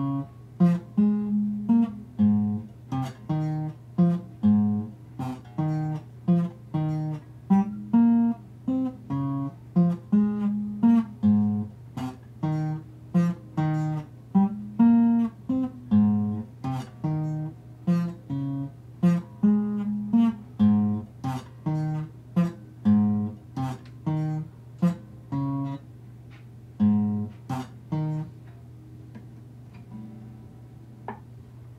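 Acoustic guitar played solo, picked notes and chords one or two a second, each ringing out, with a steady low hum underneath. The playing thins out near the end.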